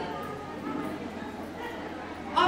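A woman's voice through a PA system, faint and low between louder phrases.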